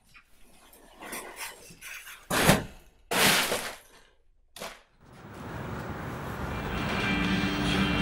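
A string of sharp impacts and crashes, the loudest two about two and a half and three seconds in, then a steadily swelling rumble with held music tones from about five seconds in.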